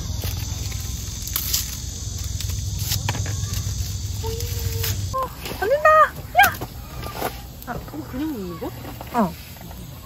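Beef steak sizzling on a wire grill over a charcoal fire pit: a steady hiss that cuts off abruptly about halfway through. After it come short wordless vocal sounds with rising and falling pitch.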